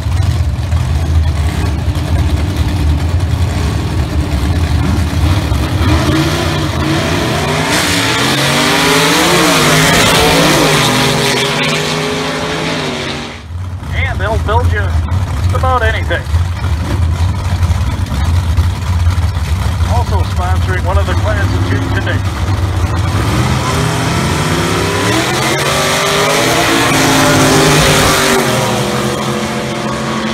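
Vintage gasser drag cars at the starting line: engines running and revving, then launching at full throttle with a rising engine note that peaks about ten seconds in. After a sudden cut, a second pair idles at the line and launches near the end with another rising run.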